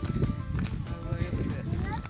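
Footsteps on a gravel path at a walking pace, with people's voices over them.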